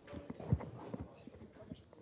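Faint, irregular knocks and clicks in a quiet room, the loudest a single thump about half a second in.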